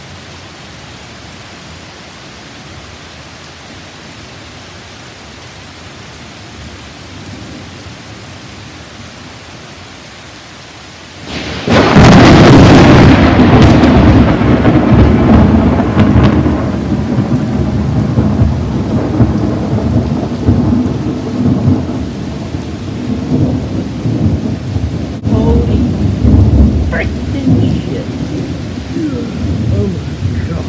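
Steady rain falling, then about eleven seconds in a sudden, very loud clap of thunder, followed by long low rumbling that rises and falls in loudness.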